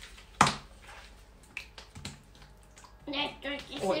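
Plastic toy packaging being handled on a table: one sharp click about half a second in, then a few faint clicks and rustles. A voice comes in near the end.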